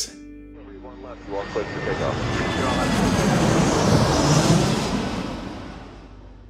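Jet aircraft flying past: a rushing engine noise that builds over a few seconds, peaks about four seconds in and then fades away.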